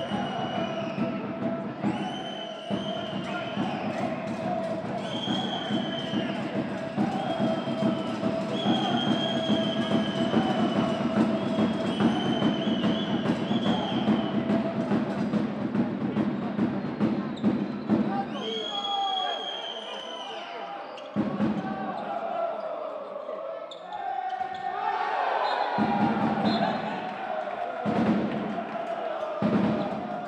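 Indoor handball court sounds: the ball bouncing on the floor among short knocks, under crowd noise. For the first half a high tone sounds about every second and a half, and music-like sound is mixed in.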